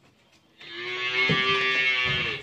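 A cow mooing: one long call that starts about half a second in.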